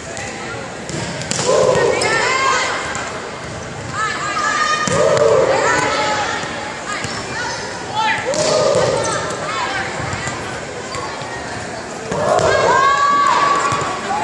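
Volleyballs being struck and bouncing on a hardwood gym floor during a team warm-up, with sneakers squeaking and players calling out, echoing in a large hall.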